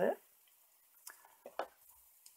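A few faint, light clicks and taps of a pencil on paper and then set down on the tabletop, after the last word of speech.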